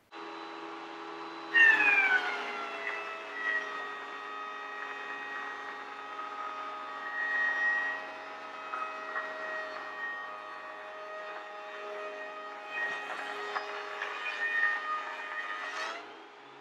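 Benchtop thickness planer running, then taking a pass on a wide board on a planer sled: about a second and a half in the cutterhead bites with a sudden loud cut and the motor's whine drops in pitch under load. It holds that steady loaded cutting sound, and the pitch climbs back just before the end as the board clears the cutterhead.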